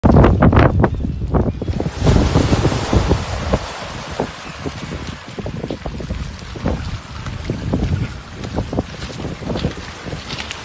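Small waves washing up and draining back over a pebble beach, with heavy wind buffeting the microphone, loudest in the first two seconds.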